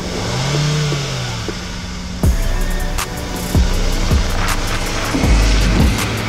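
Background music with a beat over a Hyundai i10 being driven up a car transporter's steel ramp. Its engine revs briefly in the first second and a half, followed by several heavy knocks as it climbs. The loudest part is a deep rumble as it rolls past near the end. The engine is still running poorly, "not a very happy runner".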